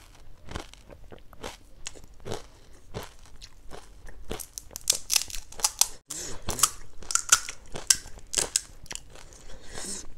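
Close-miked crunching and chewing of crisp Indian street snacks, sev-topped chaat and puffed pani puri shells. The crunches are sparse at first and come thicker and louder in the second half.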